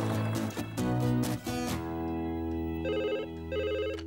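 A short cartoon music cue of held notes, then a desk telephone ringing: two short warbling rings in the last second and a half.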